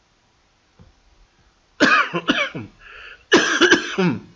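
A person coughing: two loud bouts of a few harsh coughs about a second apart, with a breath drawn in between.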